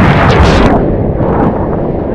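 A big sea wave breaking over swimmers and the camera: a loud crash of surf and splashing water, strongest in the first moment, easing within a second into rushing, churning water.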